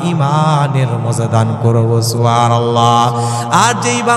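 A man's voice chanting a sermon in long, sliding melodic phrases, sung rather than spoken, through a microphone.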